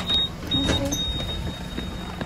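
Bus engine running with a steady low rumble, a thin high-pitched tone sounding on and off over it, and scattered knocks and clicks.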